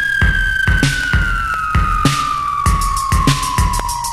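Synth-pop vinyl record played slowed down at 24 rpm. A steady drum beat runs under a long, high synth note that slides slowly down in pitch.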